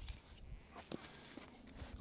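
Quiet outdoor background with a few faint, short clicks and rustles of handling.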